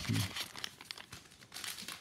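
Plastic trading-card pack wrapper crinkling in quick, irregular crackles as it is torn open, busiest near the end.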